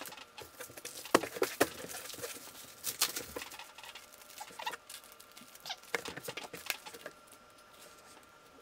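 Thin plastic comic book bags and cardboard backing boards being handled: scattered crinkles, rustles and small taps, the loudest about a second in.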